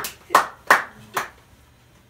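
Hand claps: four sharp claps within about a second, the last one after a slightly longer gap.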